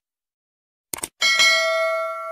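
Subscribe-button animation sound effects: a quick mouse click about a second in, then a notification bell ding that rings on with several overtones and slowly fades.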